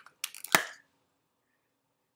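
Plastic Scentsy wax-bar packaging clicking as it is handled: a couple of light clicks, then one sharp click about half a second in.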